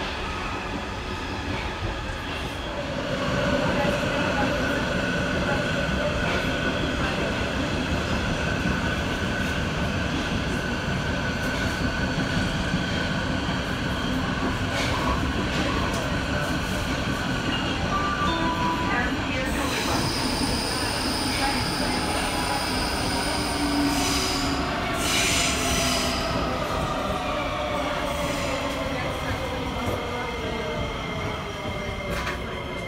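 Sofia Metro train heard from inside the car while running between stations: a steady rumble of wheels on the rails under a whine from the motors, with a high wheel squeal for a few seconds past the middle. Near the end the whine falls in pitch as the train slows.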